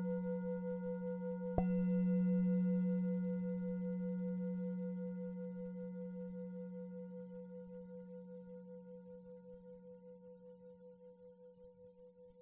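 A bowl-shaped bell (singing bowl) is struck once, about a second and a half in, while it is still ringing from an earlier strike. Its deep tone then rings on with a slow pulsing waver and fades gradually.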